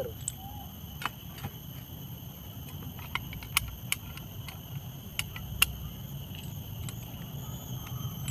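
Small, sharp metal clicks and clinks at irregular intervals: steel clamping washers and a nut being fitted by hand onto the shaft of a brush cutter's round toothed blade.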